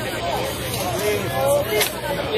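Several people's voices talking over one another, with a steady low hum underneath and two short sharp clicks near the end.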